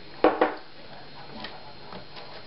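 A cup set down on a table with a short knock and a brief ring about a quarter of a second in, followed by a couple of faint clicks.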